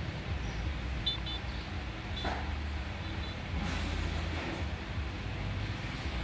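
Motorbike engine running steadily at low speed along a road, a low hum under road and traffic noise, with a few brief faint high-pitched tones.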